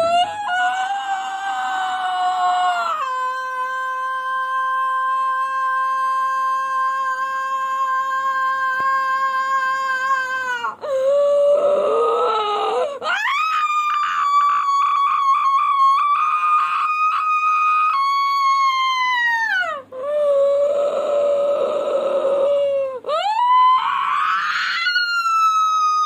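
A woman screaming in long, drawn-out wailing cries. Each cry is held for several seconds on one pitch, and some slide down or up in pitch. Some stretches are rough and hoarse, and there are short breaks between cries.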